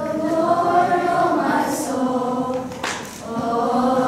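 A group of children singing a song together: one held phrase, a short break about three seconds in, then the next phrase begins.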